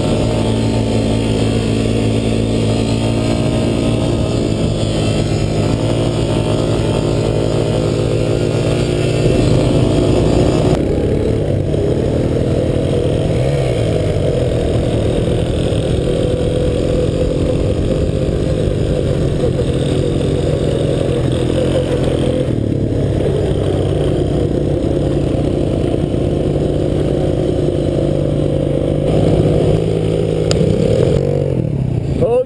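ATV (quad bike) engine running close to the microphone while riding on sand, its pitch rising and falling with the throttle, with a couple of sudden changes in the sound partway through.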